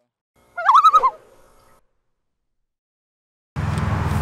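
A short edited-in sound effect: one warbling pitched call rising in pitch, about half a second long with a faint trailing tail, set between stretches of dead silence. It marks the one-minute countdown running out.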